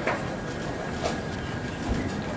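Steady playing-hall noise with a few light knocks as wooden chess pieces are handled and set down on the board.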